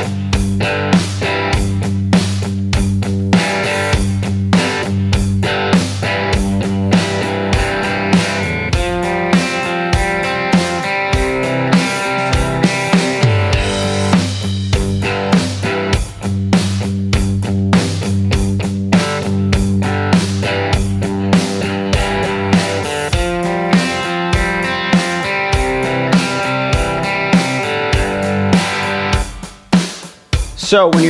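Telecaster electric guitar playing a rhythm part over a drum-kit groove, mixing palm-muted chugs, chord stabs and ringing arpeggiated chords in time with the kick and snare. The playing stops near the end.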